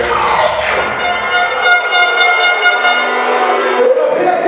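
Dancehall music played loud through a sound system. The bass drops out partway through and a steady horn-like tone holds for about two seconds, ending just before the MC's voice comes back.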